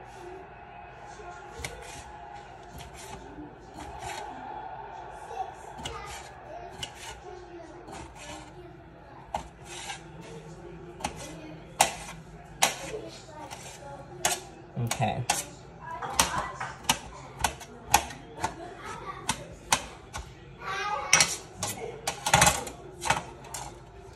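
Knife dicing a dill pickle on a metal tray: repeated sharp taps of the blade striking the tray, sparse at first, then louder and more frequent from about ten seconds in.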